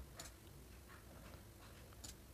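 A few faint, sharp clicks of a computer mouse over quiet room tone.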